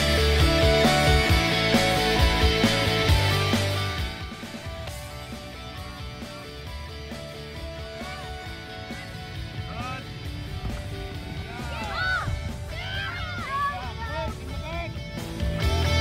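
Background rock music with guitar, loud at first, dropping to a quieter passage about four seconds in and coming back up near the end.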